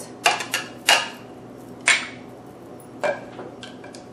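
A small dish tapped against a food processor's plastic bowl to empty out seasonings, then set down on a stone counter: a handful of sharp clicks and clinks at uneven intervals.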